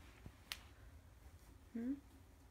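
A single sharp click about half a second in, then a short voice sound rising in pitch near the end.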